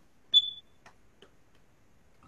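A single short, high-pitched ding about a third of a second in, fading quickly, followed by a few faint clicks.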